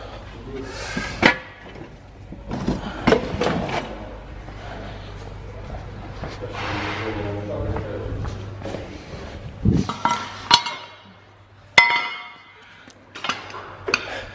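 Two sharp metallic clinks with a brief ringing tail, about ten and twelve seconds in, over a low steady hum, with indistinct voices earlier on.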